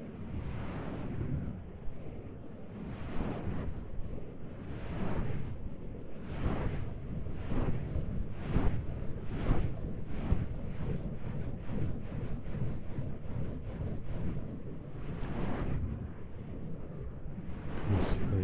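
Hands rubbing and massaging the ears of a 3Dio binaural microphone: a close, rushing friction noise made of repeated strokes, coming faster in the middle of the stretch.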